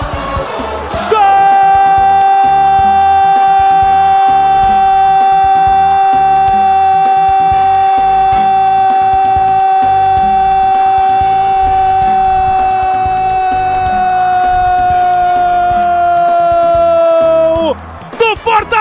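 A radio football commentator's drawn-out goal shout, one long held note celebrating a goal. It jumps in loudly about a second in, holds steady for some sixteen seconds, and sags slightly in pitch before breaking off near the end.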